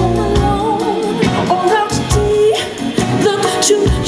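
Live band performance: a woman sings a soul-pop melody into a handheld microphone over electric guitar and drums.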